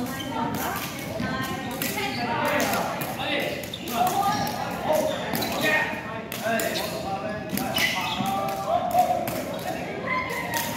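Jianzi shuttlecock being kicked back and forth, sharp taps and thuds at irregular intervals along with shoes on the wooden floor, over people's voices talking and calling in a reverberant sports hall.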